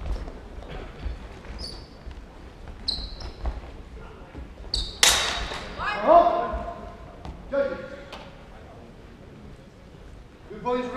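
Steel longswords clashing in a large hall: short high metallic rings about two and three seconds in, then a loud clash about five seconds in, followed by shouted calls and thuds of footwork on the wooden floor.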